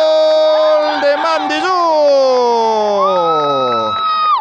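A Spanish-language football commentator's drawn-out goal cry, one long held 'gooool' that slides steadily down in pitch from about a second in. A second, higher held voice comes in near the end.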